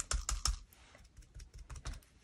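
A craft sponge dabbing acrylic paint through a thin plastic stencil onto crinkly packing paper: a quick run of light taps in the first half second, then a few fainter ones.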